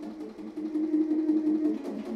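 Solo baritone saxophone in an extended-technique passage. About half a second in, it settles on a loud held note for about a second, with a fast buzzing pulse running through the tone.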